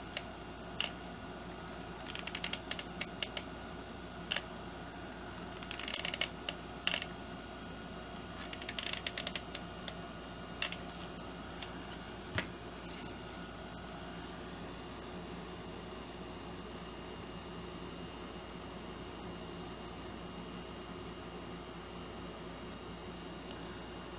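Work noise from hot-gluing cardboard fins onto a cardboard rocket tube: scattered sharp clicks and three short rattling bursts from the glue gun and the handled cardboard over the first ten seconds or so. After that there is only a steady low hum.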